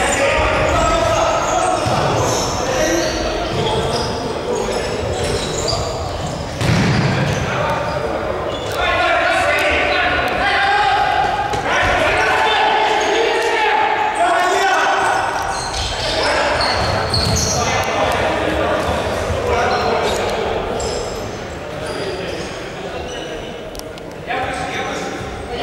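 Futsal players shouting and calling to each other over the thuds of the ball being kicked and bouncing on the hard court, all echoing in a large sports hall.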